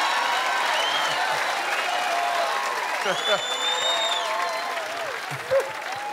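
Theatre audience laughing and applauding, with two long high whistles and scattered whoops; the applause eases off near the end.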